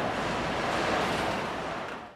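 Steady factory-floor background noise from production-line machinery, an even hiss-like rumble, beginning to fade out near the end.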